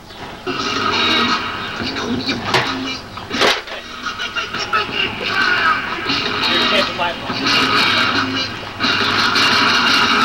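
Loud music with a voice in it, with two sharp clicks about two and a half and three and a half seconds in.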